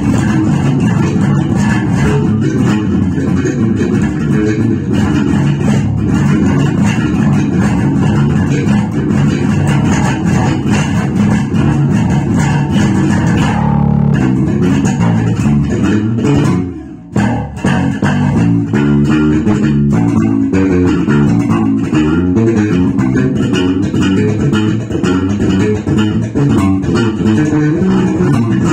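Electric bass guitar played with the fingers: a fast groove of quick, changing notes. About halfway through, a low note is held for a moment, and soon after the playing drops out briefly before picking up again.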